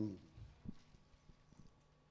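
A man's voice ending a word, then a pause in a quiet room with a few faint knocks.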